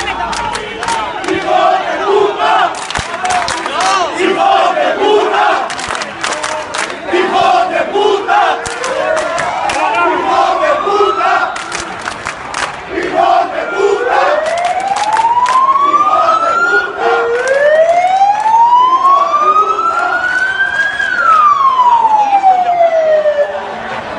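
Crowd of protesters shouting in a street clash, with many short sharp sounds through the first half. From about a third of the way in, a siren wails, rising slowly three times and falling away near the end.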